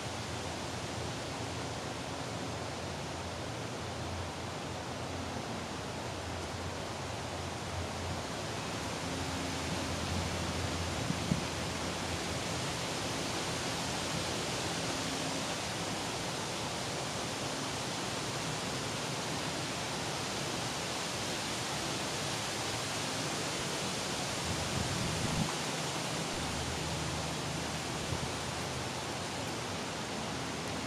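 Steady, even background hiss with no pattern to it, broken only by a couple of brief soft bumps near the middle and about 25 seconds in.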